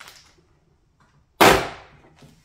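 Plastic speaker grill of an HP Pavilion 27 all-in-one popping off its clips as it is pried free. There is a faint click at the start, then one sharp, loud snap about one and a half seconds in.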